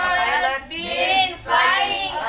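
A child's high voice reciting in three drawn-out, sing-song stretches.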